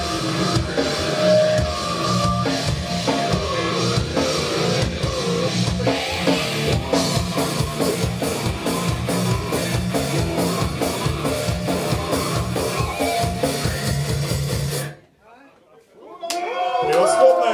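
Live grindcore band playing at full volume: fast, dense drumming with distorted electric guitar and bass. The song stops abruptly about a second before the end, leaving near silence.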